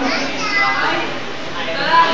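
Young people's voices chattering and talking over one another; the words can't be made out.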